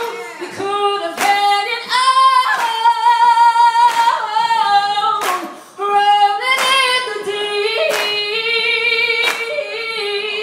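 A woman singing a cappella into a microphone, holding and bending long melismatic notes, while the audience claps a steady beat about once every second and a quarter.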